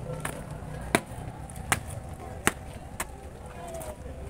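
A series of six sharp knocks, roughly one every three quarters of a second and unevenly spaced, over a steady low rumble.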